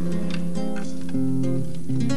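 Classical nylon-string guitars playing the opening chords of a slow bolero, with the held notes shifting to new chords a few times.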